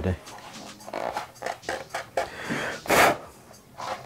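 A man's breathing at close range, with one loud, sharp breath about three seconds in.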